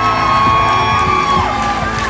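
Background music with a crowd cheering over it, and one long held high voice that drops away about a second and a half in.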